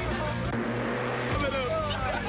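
Car engine running at speed, heard from inside the cabin, its note changing twice.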